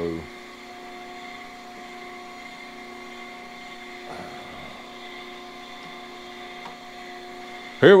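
Cam grinder's motors running with a steady hum of several fixed tones, not yet cutting the camshaft journal. A brief soft handling noise comes about four seconds in.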